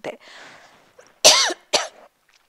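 A woman coughs twice, a loud cough followed by a shorter one, after a faint breath in.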